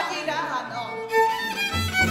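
A woman's voice trails off in a falling phrase. Then a fiddle comes in with held notes about halfway through, and a frame drum starts beating near the end, striking up a Radom-region folk dance tune.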